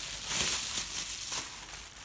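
Thin plastic shopping bag rustling and crinkling as it is handled, with irregular crackles that are loudest about half a second in.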